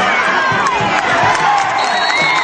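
Football crowd cheering and yelling, many voices shouting over one another over a steady roar of crowd noise.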